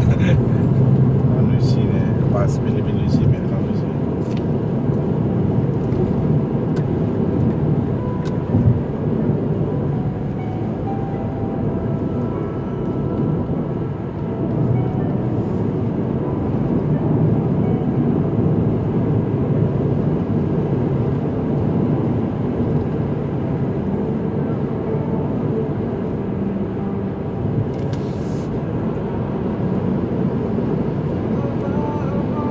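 Steady road and engine noise inside a car's cabin at highway speed, with a few light clicks in the first few seconds.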